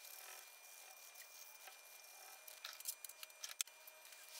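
Faint scratching and rubbing of a hand-held abrasive strip against a brass saw screw clamped in a vise. A cluster of sharper scratchy ticks comes near the end, the loudest just before it ends.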